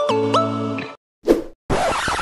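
Logo intro jingle: music notes that step and slide in pitch, cutting off about a second in, followed by a single short hit and then a brief burst of hiss near the end as the intro finishes.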